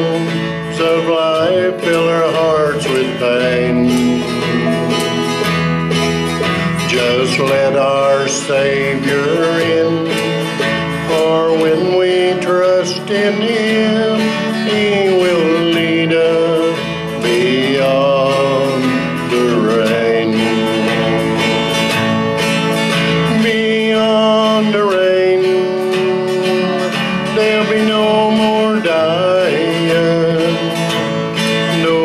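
Country gospel band music with guitar accompaniment and a lead melody that slides smoothly between notes, heard as an instrumental passage between sung verses.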